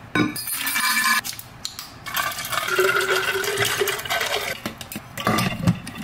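Water running into a large insulated water bottle as it is filled, in two spells: a short one, then a longer one of about three seconds.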